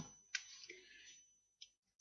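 Near silence, broken by a faint click about a third of a second in and another fainter click near the end.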